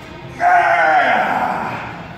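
A loud, bleat-like cry starting about half a second in and falling in pitch as it fades over a second or so, over background music.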